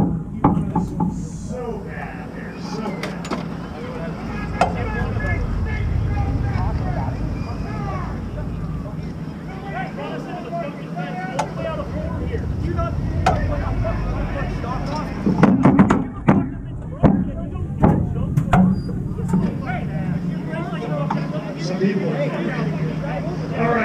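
Several people talking at once over a steady low vehicle rumble, none of it close enough to make out. A cluster of sharp knocks and thumps comes in about two-thirds of the way through.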